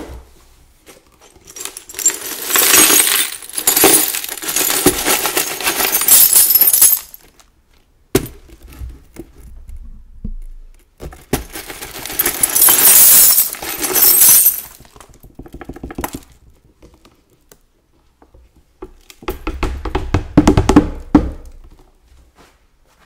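Swept-up shards of a broken glass vacuum flask poured into a dustbin: three long rushes of sliding, tinkling glass, with scattered clinks between them. The last pour, near the end, has low thuds in it.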